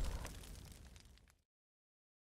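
The tail of a rumbling, crackling intro sound effect fading out within about a second, followed by silence.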